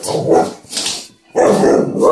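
American Staffordshire Terrier barking: two drawn-out barks, the second starting about one and a half seconds in, a dog demanding the bone it wants.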